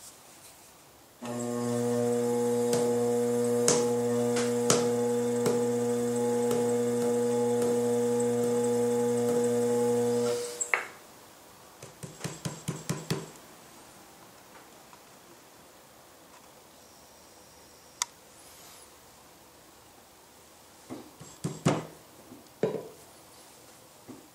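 A loud, steady hum with several fixed pitches that starts abruptly about a second in and cuts off after about nine seconds, followed by scattered light clicks and taps.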